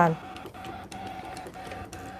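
Brother ScanNCut SDX125 electronic cutting machine running a cut: a steady motor whine with short breaks and a few faint clicks as the carriage and blade work the paper on the mat.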